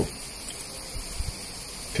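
Steady background hiss, even and fairly high in pitch, with no distinct events.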